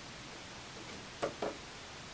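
Two quick clicks of a small push-button on an LED matrix controller board being pressed, about a quarter second apart, over a steady faint hiss.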